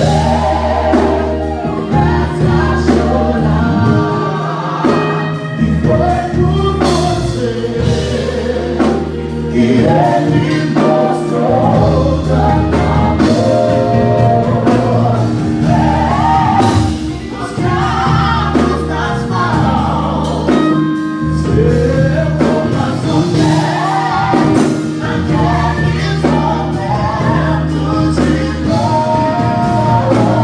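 Live gospel worship song: three vocalists singing together in harmony, backed by keyboard, bass guitar and electric guitar.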